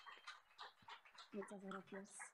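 Near silence: room tone, with a faint voice heard off-mic over the last half second or so.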